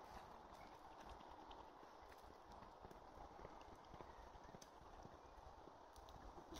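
Near silence: faint outdoor ambience, a low rumble with a few soft, scattered clicks.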